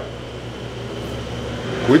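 Low, steady mechanical hum that drops away shortly before the end.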